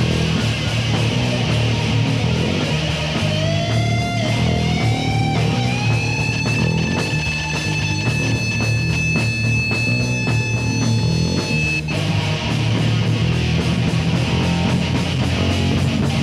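Heavy metal band playing live: distorted electric guitar over bass and drums. About three seconds in, a lead guitar note bends upward and is held, ringing over the band until it cuts off about twelve seconds in and the full band sound returns.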